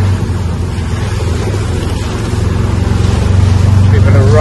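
Engine of an open-sided buggy running steadily as it drives, with a low hum and wind and road noise in the open cab, growing a little louder in the second half.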